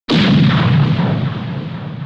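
One loud booming hit opening an 80s-style electronic track: a sudden burst of noise with a heavy low end that dies away slowly over a few seconds.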